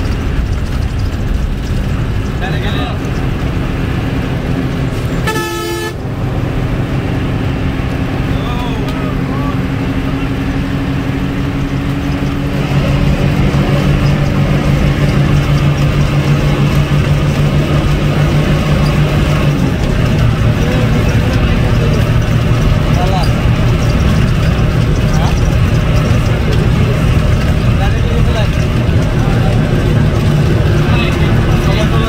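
Bus diesel engine under load, heard from inside the cabin at highway speed; its pitch climbs slowly through a gear and drops about twenty seconds in at a gear change. A brief horn toot about five seconds in.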